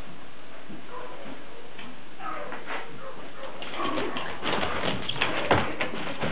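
A few faint, short animal whimpers, then a spell of rustling, scuffling and knocks from about three and a half seconds in, loudest just before the end.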